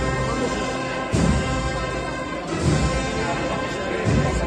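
An agrupación musical, a Spanish brass-and-drum processional band, playing a procession march. It holds long sustained chords, with heavy drum beats about a second in and again near three seconds.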